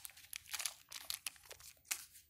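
Plastic KitKat wrappers crinkling as the candy bars are handled and set down, in an irregular run of short crackles.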